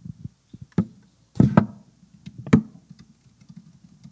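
Typing and knocking on a laptop at a lectern, picked up by the lectern microphone: a run of irregular thuds and clicks, the loudest about a second and a half in and again about two and a half seconds in.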